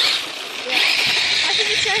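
A small electric RC car setting off across snow: a steady hissing whir of its motor and spinning tyres, starting just under a second in.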